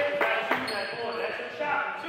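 A basketball bouncing twice on a hardwood gym floor in the first second, over the voices of players and spectators in a large echoing gym.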